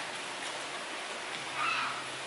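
Steady, even hiss of background noise, with a short faint vocal sound near the end.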